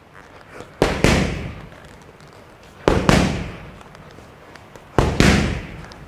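Boxing gloves smacking focus mitts in three quick pairs of hits, about two seconds apart, each hit trailing off in the room's echo.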